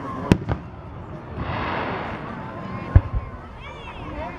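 Aerial firework shells bursting: a sharp bang a moment in with a smaller report right after, then a louder bang about three seconds in, again followed quickly by a second report.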